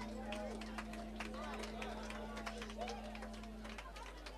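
Pub crowd chattering between songs, with scattered clicks and knocks, over a steady low hum that cuts out shortly before the end.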